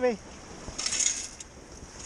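Wet sand and small debris rattling through a perforated metal Stavrscoop sand scoop as it is lifted and shaken to sift out a dug target. The rattle comes as a short burst about a second in.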